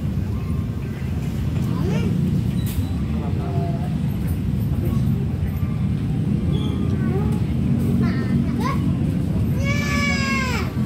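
Constant low din of a busy food court, with young children's voices calling out briefly now and then above it; one loud, drawn-out child's call comes near the end.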